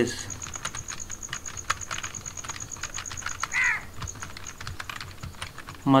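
Laptop keyboard typing: irregular keystroke clicks as a word is typed. About three and a half seconds in there is a brief high call that falls in pitch.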